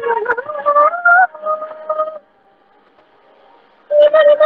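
A young woman singing a Hindi song unaccompanied, heard over a video call. A sung phrase of sliding notes runs for about two seconds and stops, and after a short pause she comes back in with a long held note near the end.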